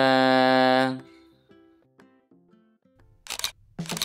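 A drawn-out spoken word trails off in the first second, leaving faint background music. Near the end comes a camera shutter sound effect, two sharp clicks, as the picture changes to a photo-style shot.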